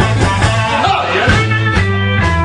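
Live blues band playing, with electric guitar over steady low notes, recorded on a camcorder in a crowded bar room.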